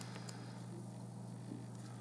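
Quiet room tone with a steady low hum, and a few faint light ticks near the start and again about halfway as a crochet hook works thin thread.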